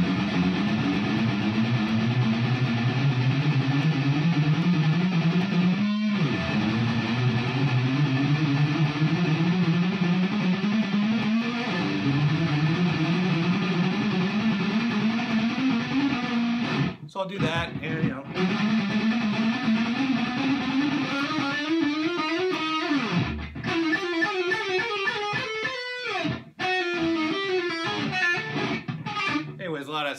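Electric guitar playing slow warm-up finger-exercise runs, note by note. Each run climbs stepwise in pitch for about five seconds, then starts again from the bottom, about six times, with the later runs going higher. The playing is a little sloppy.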